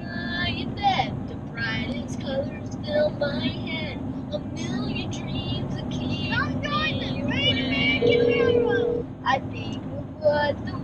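Children singing along to a song inside a moving car, over steady road and engine noise. A steady note is held for about a second near the end.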